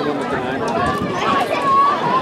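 Indistinct talk of spectators near the microphone, several voices overlapping with no clear words.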